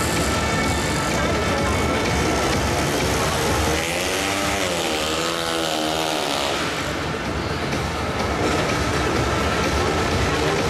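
A 500cc single-cylinder speedway bike engine running as the rider pulls away, over loud stadium noise; about four seconds in, its pitch rises and falls several times as the throttle is worked.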